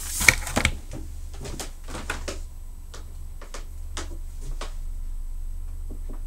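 Light clicks and knocks of handling as a hardback book is set down on a wooden table, thinning out after about four seconds to a steady low hum.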